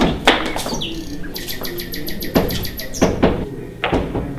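Bird chirping over footsteps on a hard hallway floor: a short falling whistle about a second in, then a rapid trill of high chirps, about eight a second, lasting about a second and a half.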